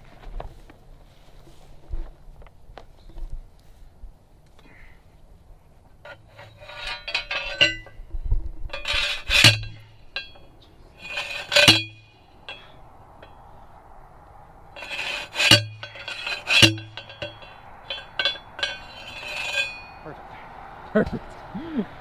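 Metal posts being driven into the ground for signs: a series of irregularly spaced, ringing metallic clangs, loudest in the middle stretch.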